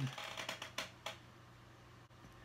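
A few light clicks and taps in the first second as a glass slide is set onto a microscope stage and under its clips, over a faint steady hum.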